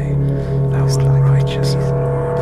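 Rock music from a 1988 vinyl LP: a steady low drone and sustained instrument notes, with repeated cymbal-like strikes over them.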